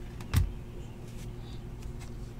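A single sharp knock on the tabletop about a third of a second in, over a steady low hum.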